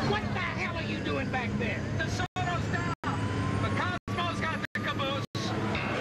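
A large motor vehicle's engine running steadily with indistinct voices and street noise over it; the whole sound cuts out briefly five times in the second half.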